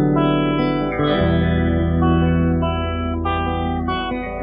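Instrumental rock music: guitar holding sustained chords through an effect, the chord changing about a second in and again near the end.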